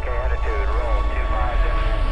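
A deep rumble under held soundtrack tones, with a brief wavering, voice-like sound through the first second and a half.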